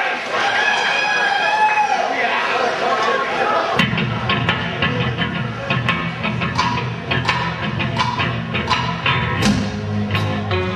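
Audience shouting and cheering between songs, then about four seconds in a live rock band starts the next song. Electric bass and guitars come in with a steady low line under regular sharp hits.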